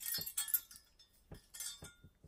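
Decorative cast iron keys on a ring and iron chain clinking and jangling as they are handled: a series of light metallic clinks with brief ringing, clustered in the first half second and again around a second and a half in.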